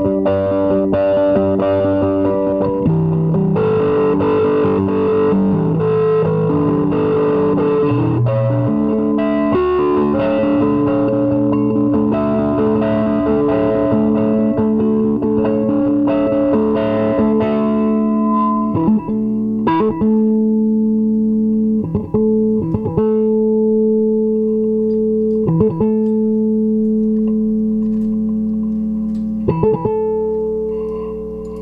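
Nine-string electric guitar (the 'Future Lute', with a Peavey single-coil and a Barcus Berry piezo pickup) played through a 1-watt amp into an Ampeg 8x10 cabinet. Chords change for most of the first half, then one chord is held ringing with a few sharp percussive strikes over it and fades near the end.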